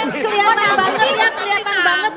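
Several people talking at once, overlapping chatter.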